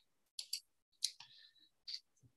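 A few faint, short clicks, irregularly spaced.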